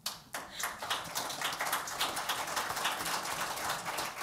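Audience applauding: many hands clapping quickly and densely, a steady patter of overlapping claps.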